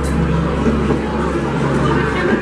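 Indistinct crowd chatter in a large hall over a steady low rumble.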